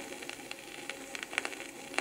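Surface noise of a red flexi-disc (sonosheet) playing on a turntable: a steady hiss with scattered crackles and a few sharp clicks.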